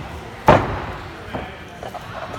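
A loud, sharp slam about half a second in, followed by two lighter knocks, over voices echoing in a large hall.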